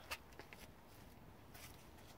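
Near silence: a low background hum with one short click just after the start and a few fainter ticks later on.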